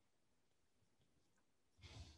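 Near silence: room tone, with a faint intake of breath near the end.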